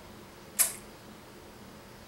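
A single short, sharp lip smack about half a second in, over quiet room tone, as a strong dark ale is tasted.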